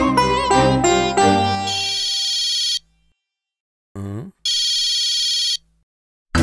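A music cue with a tinkling melody ends, then a phone rings twice, each ring a trill about a second long with a pause of nearly two seconds between them. A brief quieter sliding sound comes just before the second ring.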